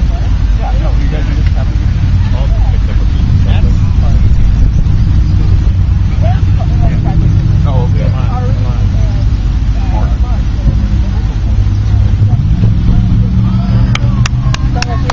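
A loud, steady low rumble with distant voices calling faintly over it.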